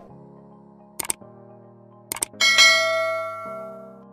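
Subscribe-button animation sound effects over soft background music: two quick mouse clicks, then two more about a second later, then a notification bell ding that rings and fades over about a second.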